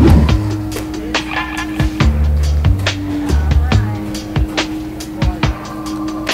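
Background music with a steady beat and a changing bass line, with a brief loud swoosh at the very start.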